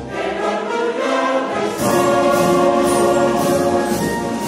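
Mixed choir singing with a wind band accompanying. The bass of the band drops away briefly about half a second in and returns in full at about two seconds.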